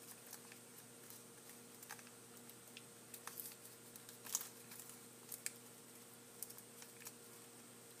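Faint, scattered small clicks and rustles of origami paper being handled and pressed into folds, the clearest about four seconds in, over a faint steady hum.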